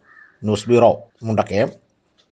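A man's voice speaking two short phrases.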